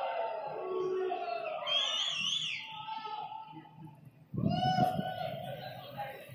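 People's voices, including a high wavering cry about two seconds in and a drawn-out vocal sound starting after a brief lull near the end.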